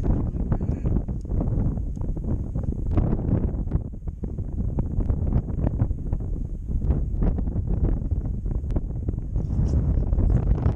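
Wind buffeting the camera microphone, a steady, fluttering rumble.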